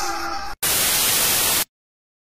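The tail of electronic music, a brief gap, then a burst of loud static hiss lasting about a second that cuts off suddenly into silence.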